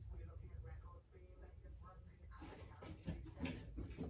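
Faint rustling strokes of a hairbrush through freshly curled hair, starting a little over two seconds in, over a low room hum.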